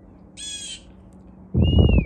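Blue jay giving one harsh, scratchy jeer call about half a second in. Near the end there is a brief loud low rumble on the microphone, with a short whistled note above it.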